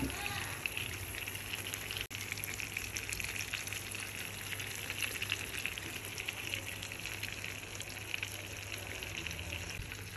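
Cheese-topped beef steaks sizzling steadily in a pan on a gas hob, with fine crackles from the fat and juices, over a low steady hum.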